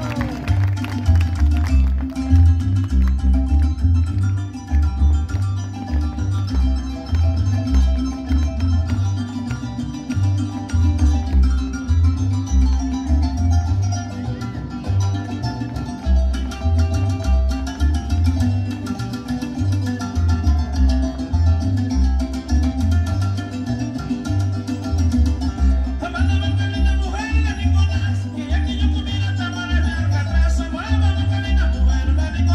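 Recorded Mexican folk music from Veracruz, son jarocho, played over loudspeakers for a dance, with a steady rhythmic bass line. A singing voice comes in near the end.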